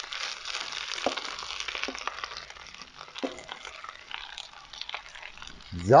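Pointed cabbage and onions frying in hot fat in a Dutch oven, a steady sizzle with a few light knocks.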